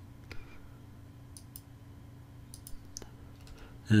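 Several sharp computer mouse clicks, some in quick pairs, over a faint steady low hum.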